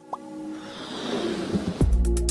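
Animated-logo sound effects: a short rising plop, then a swoosh that builds and swells, ending in a deep bass hit near the end as electronic music starts.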